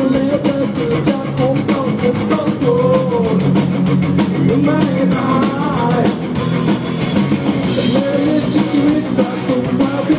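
Live rock band playing: a male vocalist singing over electric guitars and a steady drum-kit beat.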